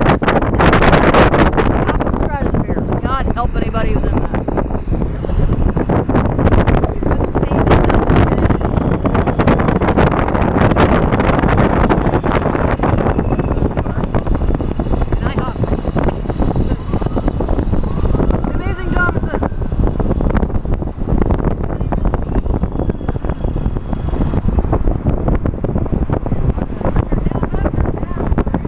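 Wind buffeting the microphone and road noise from a moving vehicle, a loud, steady rush with constant flutter, and faint voices underneath.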